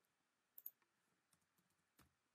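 Near silence broken by a few faint computer keyboard and mouse clicks: a close pair about half a second in, a few weaker ones, and one more at the end.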